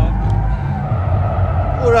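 Cabin noise of a Porsche Taycan Turbo electric saloon driven hard on a race track: a steady low rumble of tyres and road, as the car slides sideways. A man exclaims right at the end.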